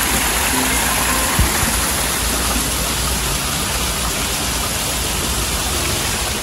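Small waterfalls splashing over mossy rocks into a koi pond: a steady, even rush of falling water, with a brief low knock about a second and a half in.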